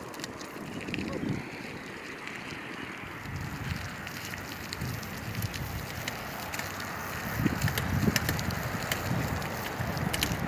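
Outdoor wind rumbling and buffeting on a phone microphone in uneven gusts, louder from about seven seconds in, with scattered faint clicks.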